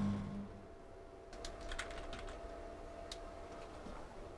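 A few scattered key clicks from typing on a computer keyboard. A low hum dies away in the first half second.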